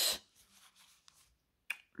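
A word trails off, then near quiet with faint handling ticks and a single short, sharp click shortly before speech resumes.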